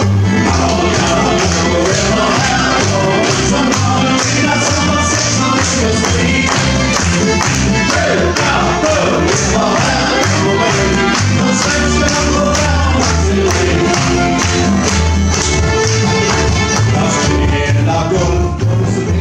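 Acoustic string band playing live: fiddle, mandolin, acoustic guitar, banjo and upright double bass, with a steady strummed beat.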